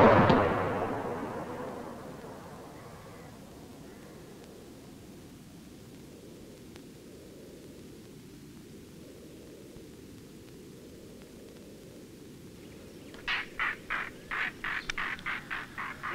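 Faint, steady outdoor ambience after a louder sound fades out over the first two seconds; about three seconds before the end a bird starts calling in a rapid run of short, sharp notes, about four a second.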